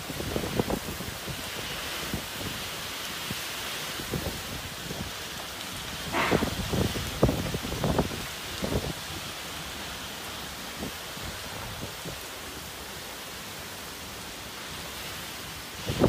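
Typhoon wind and heavy rain: a steady rushing hiss. A few gusts buffet the microphone about halfway through.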